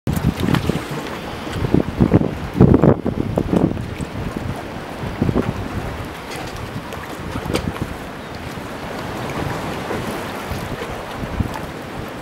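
Wind buffeting the microphone in strong, irregular gusts for the first few seconds, then settling into a steadier rush of wind and water.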